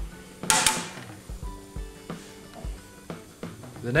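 A plastic part clattering as it is dropped into a metal motorcycle pannier about half a second in, followed by a few light knocks of handling inside the case. Faint background music runs underneath.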